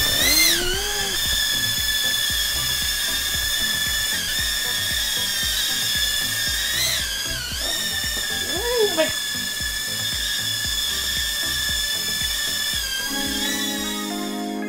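Tiny UT10 toy quadcopter's propeller motors whining steadily at a high pitch as it takes off and hovers, the pitch wavering as it is steered around. Music comes in near the end.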